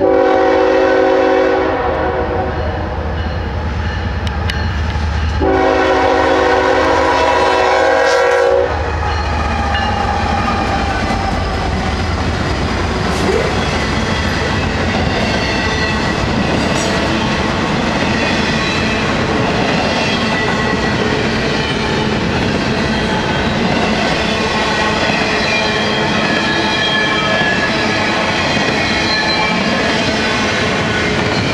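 Horn of the lead GE ES44AC locomotive, Norfolk Southern heritage unit 8114, sounds a short blast at the start and a longer one about five seconds in, over the heavy rumble of the three diesel locomotives passing close by. After about ten seconds the double-stack intermodal cars roll past, with steady clickety-clack of wheels on the rail.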